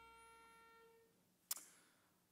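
The last chord of a hymn's keyboard accompaniment dying away, its notes fading out one by one over the first second. A single sharp click comes about a second and a half in, then near silence.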